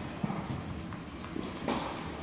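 Footsteps of a tennis player walking on a hard indoor court, a series of uneven knocks and taps, with one sharper knock near the end.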